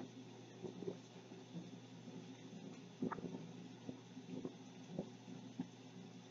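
Faint thunderstorm recording playing through a television speaker: a low, steady hiss and hum with a few soft knocks.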